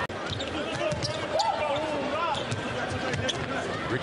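Game sound in a basketball arena: crowd noise with a basketball bouncing on the hardwood court, heard as scattered short sharp knocks.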